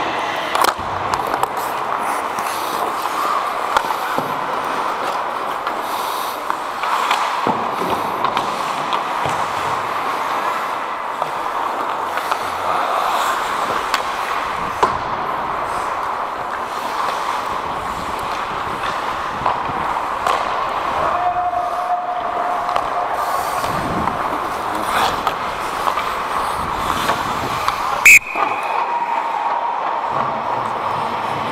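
Ice hockey play heard from a skating referee's helmet camera: a steady rushing noise of skates on ice, with scattered knocks of sticks and puck. Near the end, a loud sharp blast of a referee's whistle, about a second long, stopping play.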